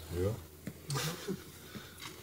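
Speech only: quiet, brief fragments of people talking, a short phrase at the start and a few murmured words around the middle.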